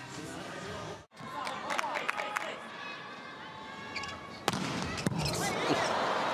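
Volleyball rally in an indoor arena: short squeaks, then two sharp ball hits about four and a half and five seconds in, with crowd noise swelling after them.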